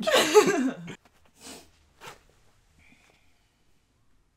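A young woman laughing loudly for about a second, then two short soft sounds and quiet.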